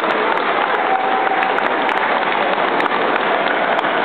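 Spectators clapping steadily, with faint voices under it.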